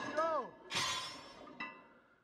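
A short vocal cry, then a sudden loud crash with a ringing, shattering tail that dies away over about a second, and a smaller clash just after.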